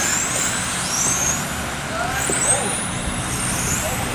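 Several electric RC touring cars on 17.5-turn brushless motors whining high as they race, the pitch rising and falling as each car accelerates and brakes, over a steady low hum.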